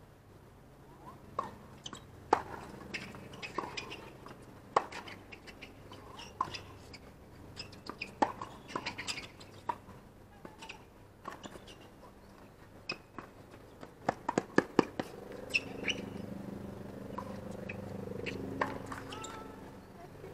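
Doubles tennis rally on a hard court: sharp racket strikes on the ball, irregularly spaced, mixed with short shoe squeaks. About fourteen seconds in, a quick run of claps is followed by a few seconds of scattered clapping and murmuring voices as the point ends.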